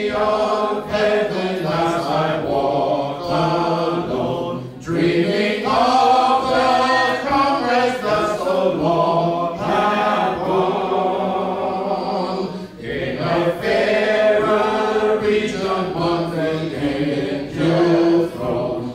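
Church congregation singing a hymn a cappella: many voices together with no instruments, in long held lines with short pauses between phrases about 5 and 13 seconds in.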